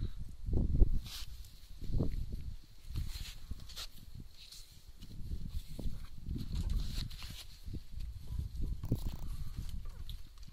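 Wind buffeting the microphone in irregular gusts of low rumble, with a faint steady high-pitched tone behind it.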